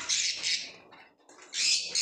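Harsh squawks from a female budgerigar sitting on her eggs: one burst at the start and another a little past halfway, with a short quiet gap between. Such scolding is typical of a brooding hen disturbed in her nest box.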